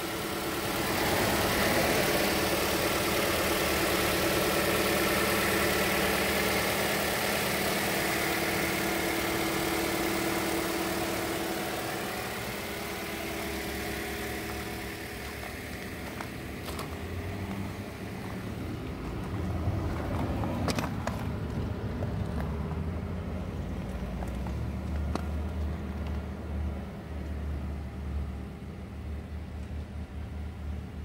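2019 Toyota Corolla LE's four-cylinder engine idling steadily with the hood open. It grows fainter after about twelve seconds, and a few light clicks come in the second half.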